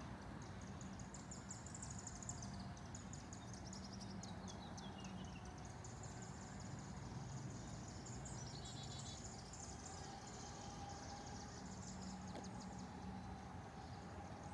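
Faint outdoor evening ambience: a steady, high-pitched insect chorus with a fast pulsing trill, broken by a few short bird chirps, a falling run of notes about four seconds in and a quick cluster near nine seconds, over a low hum.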